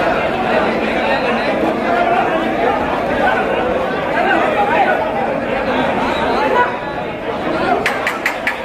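Crowd chatter: many people talking at once, steady throughout, with a few sharp clicks right at the end.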